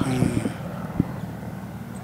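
A man's voice trailing off in a short pause, leaving steady low outdoor background noise with a single light tap about a second in.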